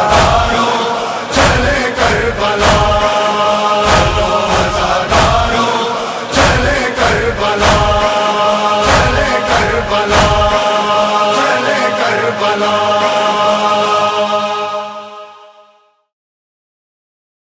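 Closing bars of a Muharram noha recording: chanted voices holding long notes over a steady beat of heavy thumps, a little under two a second. The thumps stop about ten seconds in, and the held voices fade out near the end.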